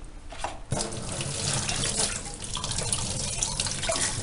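Kitchen tap water running steadily into a stainless steel sink, starting about a second in.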